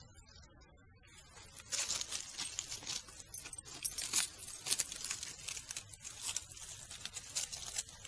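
Dry fallen leaves rustling and crackling as hands move through the leaf litter handling picked mushrooms, starting about two seconds in with many irregular sharp crackles.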